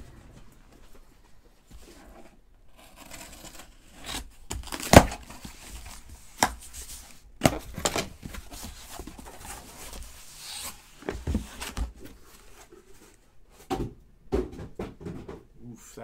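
Sealed trading card packaging being opened by hand: tearing and crinkling, with scattered sharp clicks and knocks, the loudest about five seconds in.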